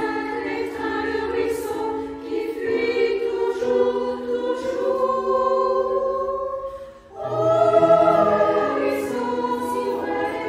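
Women's choir singing sustained, moving phrases. The phrase fades out to a short breath about seven seconds in, then the choir comes back in at its loudest.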